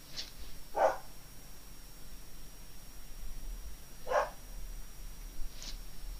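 A dog barking: two short single barks, the first about a second in and the second about three seconds later.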